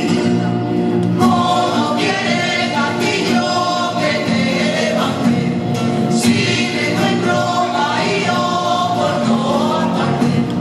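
Traditional folk dance music with a group of voices singing over it, continuous and steady in loudness.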